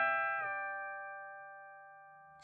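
Electric guitar on a clean tone: a tapped double-stop a fourth apart on the top two strings, held bent by the fretting hand, drops back in pitch about half a second in as the bend is released. The notes then ring on and fade away steadily.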